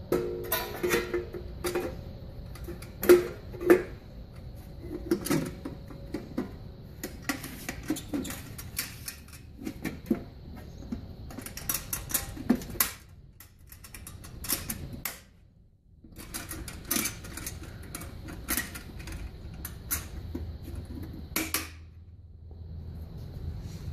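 Stainless steel cover panels of a capsule polisher being handled and fitted back over the machine: a run of metallic clicks, knocks and rattles, with a short lull about two-thirds of the way through.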